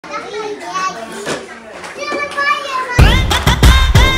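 Young children's voices calling out and chattering, then loud music with a heavy bass beat cuts in about three seconds in.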